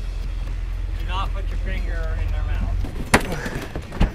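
Faint voices over a low steady rumble that stops near three seconds in. A single sharp knock follows just after, as a plastic cooler lid is opened.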